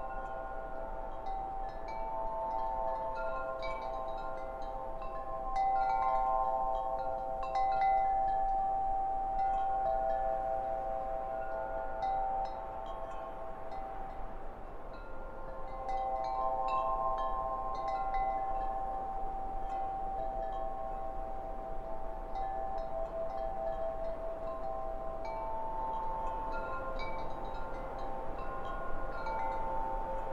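Wind chimes ringing: metal tones struck at irregular moments, overlapping and each ringing on for several seconds.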